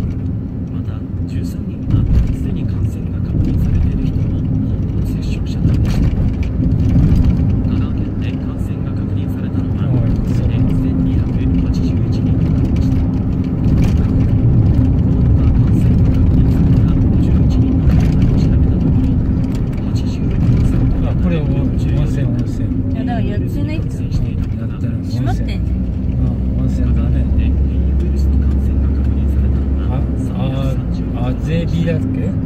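Steady road and engine noise inside a moving car's cabin: a low rumble with a constant hum, and a deeper rumble that swells for a few seconds near the end.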